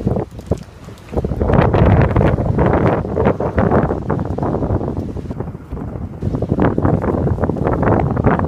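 Gusty wind buffeting a phone's microphone, a loud rumble that sets in about a second in, eases off past the middle and picks up again near the end.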